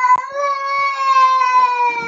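A toddler crying: one long, held wail that sags slightly in pitch toward the end.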